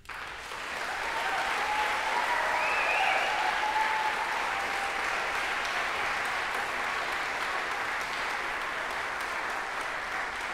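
Concert audience applauding. The applause starts suddenly as the last note of the violin and piano dies away, builds over the first couple of seconds, then holds steady.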